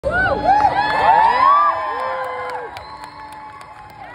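Concert audience cheering and whooping, many voices sliding up and down in pitch, loudest in the first couple of seconds and then dying down.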